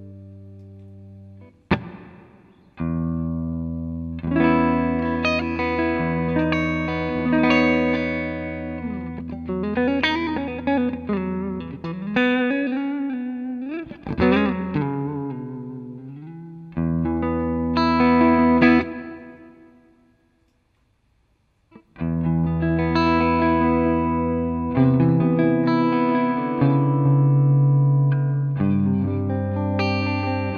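Ibanez electric guitar played through a Zoom G5n multi-effects processor on its Fender amp model: ringing, sustained chords, with bent and wavering notes in the middle. The playing stops for about two seconds near twenty seconds in, then the chords resume.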